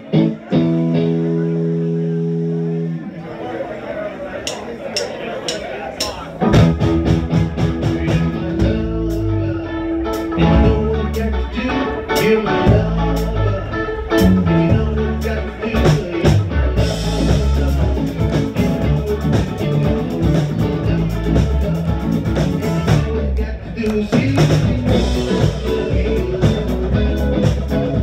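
Live rock band with electric guitar, keyboard and bass: a held chord rings for about three seconds, then the drums and full band come in about six seconds in and play on steadily.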